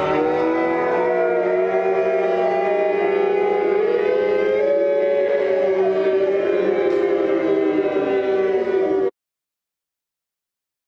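Warning sirens sounding over crashing surf: several steady, wailing tones that slowly glide in pitch. They cut off suddenly about nine seconds in.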